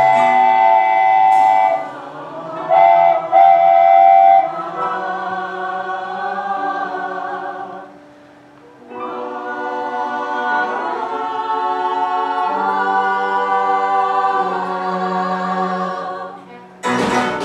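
Musical-theatre singing with live band accompaniment: long, held sung notes, a short break about eight seconds in, then sustained notes again.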